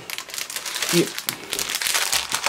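Clear plastic packaging crinkling as a packaged fabric panel is picked up and handled, a dense run of fine crackles.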